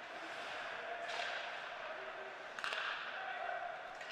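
Ice hockey rink sound during play: a steady hiss from skates on the ice, with two sharp knocks from play on the ice, about a second in and again about two and a half seconds in.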